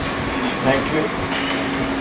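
Steady mechanical hum with a constant low tone, with brief bits of voice about halfway through and again near the end.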